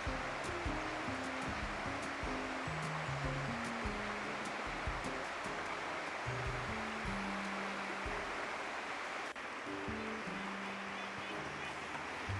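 Shallow river running over rocks, a steady rush of water, under soft background music with slow low notes.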